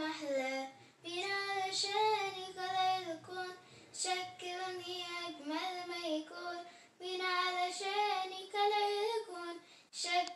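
A child's voice singing an Arabic Christian hymn (tarnima) unaccompanied, in phrases of held notes with short breaths about a second in and about seven seconds in.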